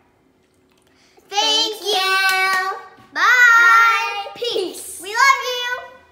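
Children singing a short phrase in four parts, with several long held notes. It starts about a second in and stops just before the end.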